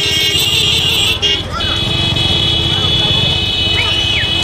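Motorcycle engines running close behind a bullock cart race, with a held high-pitched horn tone that breaks off briefly about a second in and a short rising-and-falling whistle near the end.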